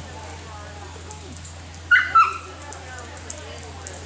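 A dog gives two short, high yips about a third of a second apart, over faint background chatter.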